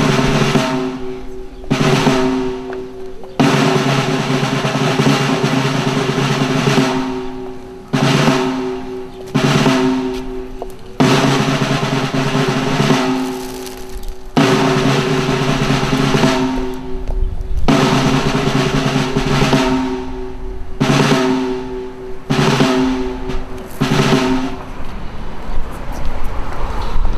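A snare drum playing a series of rolls, about a dozen, each one to three seconds long, starting sharply and dying away before the next. This is the ceremonial drum roll that accompanies a wreath-laying.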